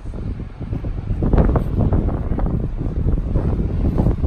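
Strong wind gusting across the microphone: a loud, uneven rumble, heaviest in the low end.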